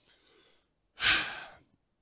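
A man's single breath into a handheld microphone, about a second in, fading over half a second.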